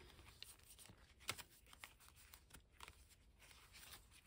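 Near silence, with faint rustling and a few soft ticks of paper sticker-book pages being handled and turned.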